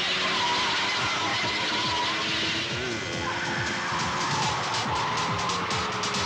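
Car tyres squealing in a skid with engine noise, a film sound-effects mix laid over background music. A fast, fine rattling joins in the second half.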